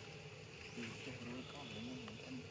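Insects buzzing in a steady, faint high drone, with faint low murmuring sounds underneath in the second half.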